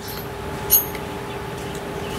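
A steady machine hum that grows slightly louder, with a short metallic clink under a second in.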